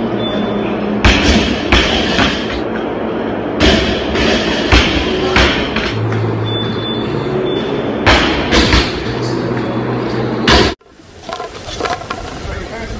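Loaded barbell with bumper plates thudding on the gym floor about ten times at irregular intervals, over steady background music. The sound cuts off suddenly near the end.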